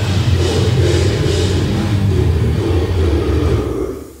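Death metal band playing live: a loud, sustained distorted guitar and bass sound with cymbal wash that dies away near the end, as a song ends.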